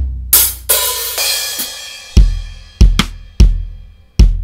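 Sampled rock drum kit in a phone recording app, played by tapping on-screen pads. A cymbal crash about a quarter second in rings out for about two seconds, then heavy drum hits follow at a steady pace of roughly one every 0.6 s.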